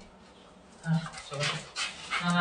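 A small dog making excited sounds, quick breaths and short whines, starting about a second in, as it jumps up eagerly at its owner.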